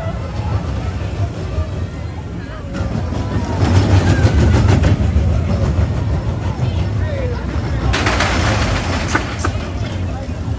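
A junior roller coaster's train running along its steel track. The rumble grows louder about three seconds in, and a burst of rattling noise comes near the end as the cars pass close by.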